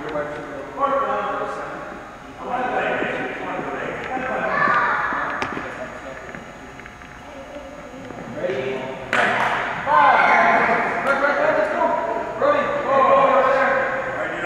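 Children's and adults' voices calling and shouting, echoing in a large gym, louder in the second half. A single sharp knock sounds about nine seconds in.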